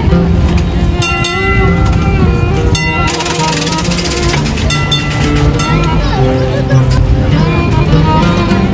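Arabic-style instrumental background music with long held string notes, with a couple of sharp clicks about one and three seconds in.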